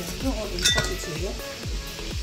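Stainless steel cutting cone clinking once against the bowl a little over half a second in, a short metallic ring, as it is shaken to knock out shredded carrot. Background music plays underneath.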